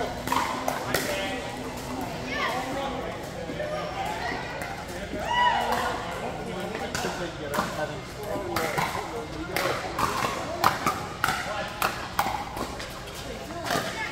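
Pickleball paddles striking a plastic ball: sharp, irregular pops throughout, in a large hard-walled indoor court hall. Indistinct players' voices carry underneath.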